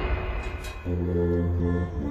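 Soundtrack music: a low chord of held, chant-like tones comes in just under a second in and holds steady. Before it comes the fading tail of a loud, sudden crash-like hit.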